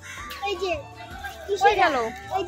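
Children's voices chattering and calling out, with one loud falling call about a second and a half in.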